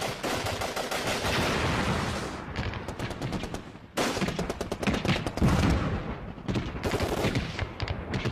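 Bursts of rapid automatic gunfire, machine-gun fire with single shots among it. It breaks off abruptly about four seconds in and again about six and a half seconds in, resuming each time.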